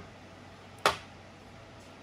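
A single short, sharp click a little under a second in, against a faint steady background hum.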